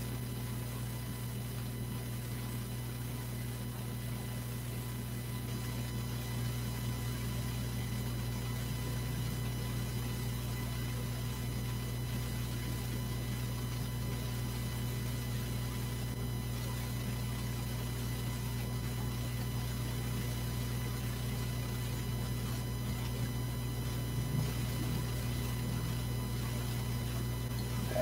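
Steady electrical hum with faint, steady high tones above it: room tone on the recording, with no other distinct sound.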